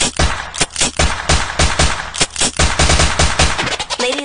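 Rapid gunfire sound effects within a dance track: bursts of quick, irregular shots over a low bass line.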